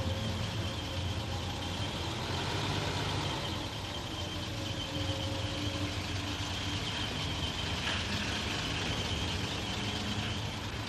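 A motor vehicle engine running steadily, a low hum with a faint high whine over it.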